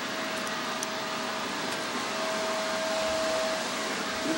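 Steady drone-like noise with a constant humming tone running through it, a little louder in the second half.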